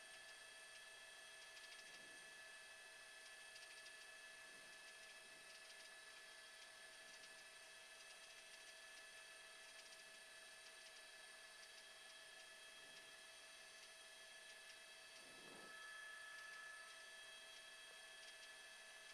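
Near silence: a faint, steady electronic hum of several thin high tones over low hiss, with a slight swell near the end.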